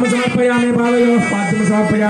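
A man chanting Sanskrit mantras in a steady, near-monotone voice, holding each note long with brief breaks between phrases.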